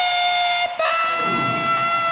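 A male rock singer's high, held vocal wail into a microphone through the concert PA: one long steady note breaks off briefly just under a second in, then is taken up again and held.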